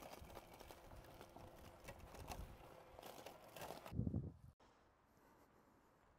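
Near silence: faint outdoor background with a few soft knocks, the loudest a short cluster about four seconds in, then a drop to even quieter silence.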